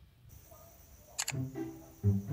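Quiet for about a second, then a short, sharp double click like a camera shutter or mouse click, the sound effect of a subscribe-button animation. Background music with plucked low notes follows.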